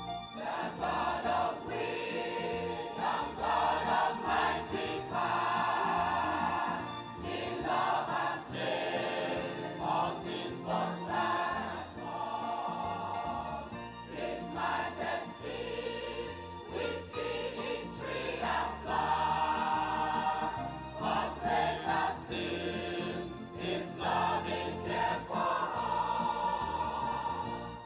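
Adult church choir singing a hymn in phrases, with electronic keyboard accompaniment; the voices come in about a second in.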